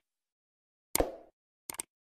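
Click-and-pop sound effects of an animated like-and-subscribe button. A short pop comes about a second in, then a quick double click near the end.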